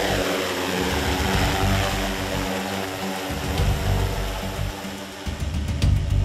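Large industrial quadcopter drone's rotors running: a steady whine of several pitched tones, with an uneven low rumble underneath.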